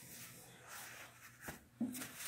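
Faint rustling of disposable cleaning-cloth fabric as homemade face masks are handled, with a single sharp click about one and a half seconds in.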